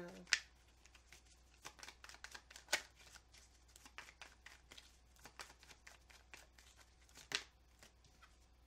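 A tarot deck being shuffled by hand: a run of soft card flicks and rustles, broken by sharper taps just after the start, about three seconds in and near the end.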